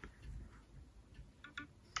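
A few faint ticks and light clicks as the iPhones are handled and the screen is touched: one at the start and a quick pair about a second and a half in.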